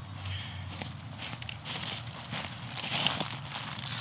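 Footsteps on dry fallen leaves and dirt: a string of light, irregular steps.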